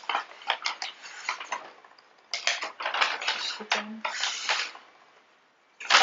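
Crinkling and rustling of packaging as small items are handled and taken out of a bag, in two bursts with a short pause about two seconds in. The handling stops about a second before the end.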